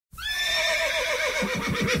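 A horse whinnying: one long call that starts high and falls in a quavering series of pitch swings to a low, rough end.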